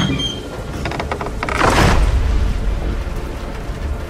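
Thunder sound effect: a deep, steady rumble that swells to its loudest about two seconds in, then eases off.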